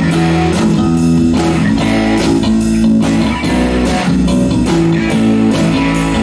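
Live rock band playing amplified: electric bass and guitar over a drum kit keeping a steady beat.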